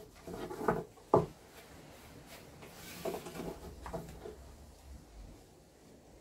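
A long, thin wooden rolling pin rubbing and knocking on a wooden pastry board as a sheet of börek dough is rolled out by hand. There is a sharp knock about a second in.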